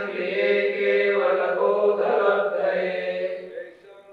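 Voices chanting a Sanskrit verse in unison, a drawn-out sung line on a steady pitch that fades out about three and a half seconds in.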